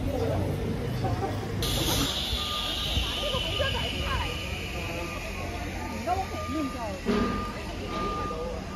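Street ambience: people talking in the background over a low traffic rumble, and from about two seconds in a high electronic beep repeating in long pulses, like a vehicle's warning beeper.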